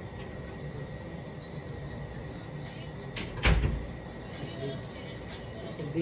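A single heavy thump about halfway through, over steady room noise.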